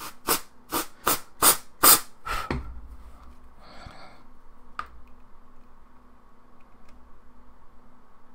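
Aerosol freeze spray hissing out in about six short, sharp bursts over the first couple of seconds, then one softer hiss and a click. The logic board is being frosted over so that a shorted capacitor shows itself by melting the frost.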